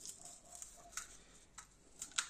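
Faint, scattered clicks and scrapes of a small knife working dried cayenne chili pods, the seeds dropping onto a wooden board; otherwise near silence.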